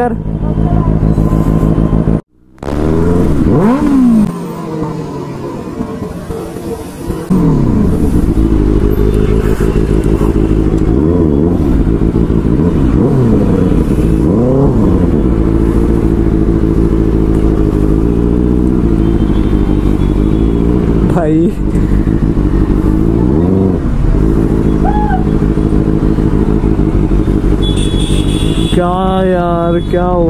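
Benelli 600i inline-four motorcycle engine running in slow traffic, its revs rising and falling several times over a steady low running note. A voice is heard near the end.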